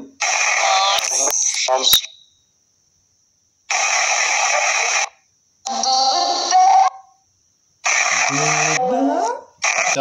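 Necrophonic ghost-box app on a phone playing bursts of white-noise static laced with chopped, warbling voice-like fragments, four bursts each cut off abruptly with dead silence between. The user takes the fragments for spirit voices, hearing one say 'doorbell'.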